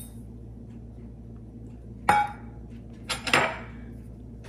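A metal measuring cup knocks against a stainless steel saucepan with one short ringing clink about two seconds in, then a few quick clicks and a brief rustle about a second later.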